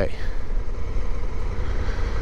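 Motorcycle underway on the road: steady wind rush on the microphone, with road and engine noise underneath.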